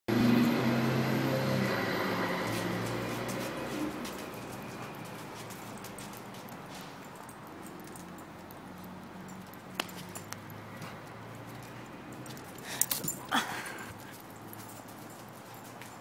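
Long-haired German Shepherd making sounds at play, loudest in the first few seconds and fading after, with a few sharp knocks about three-quarters of the way through.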